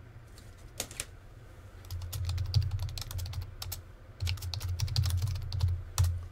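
Typing on a computer keyboard: a couple of single key clicks about a second in, then quick, irregular runs of keystrokes through the second half.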